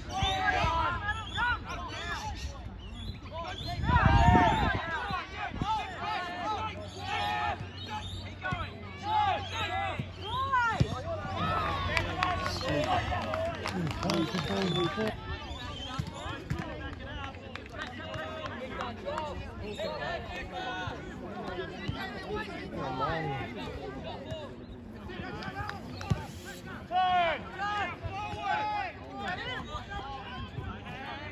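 Players' and onlookers' shouts and calls across an outdoor soccer pitch, distant and unintelligible, with a single dull thump about four seconds in.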